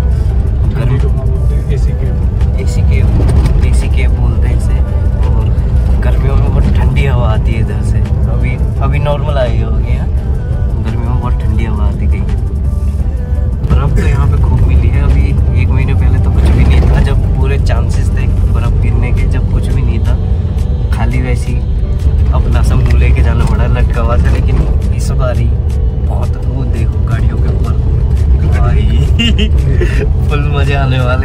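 Steady low rumble of a moving car heard from inside the cabin, with a man talking and background music over it.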